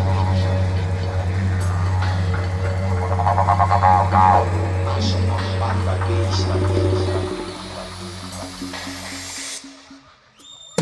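Live didgeridoo playing a steady low drone in a band mix, with sweeping wah-like tone changes about three to four seconds in. The drone stops about seven seconds in, the music carries on quieter, then drops out abruptly near the end.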